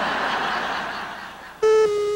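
Laughter dying away after a punchline, then, near the end, a loud steady electronic beep at one pitch that cuts in suddenly as a numbered bumper card comes up.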